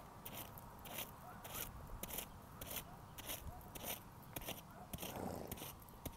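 Horse grazing, tearing at short grass with its teeth and chewing, in a regular series of crisp crunches about twice a second.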